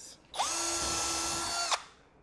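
Cordless drill spinning up quickly and whirring at steady speed for about a second and a half, then stopping: drilling a pilot hole through the plastic Hyfax runner and the sled's plastic tub.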